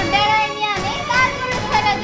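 Voices, a child's among them, talking over soft background music.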